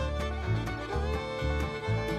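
Instrumental bluegrass-style background music: a fiddle holding long notes over a steady bass beat of about two pulses a second.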